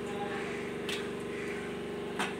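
A steady machine hum, with a faint scrape of a metal ladle stirring rice and lentils in a clay pot about a second in.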